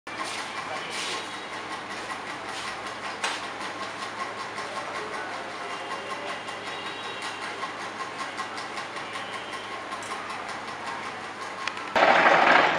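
Continuous fast rattling clatter of chain-link mesh-making machinery working galvanised wire, with a single sharper knock about three seconds in.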